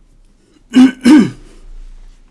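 A man loudly clearing his throat twice in quick succession, close to the microphone, the second time dropping in pitch.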